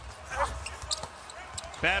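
Basketball bouncing on a hardwood court during live NBA play, over a low steady arena hum, with a brief voice about half a second in.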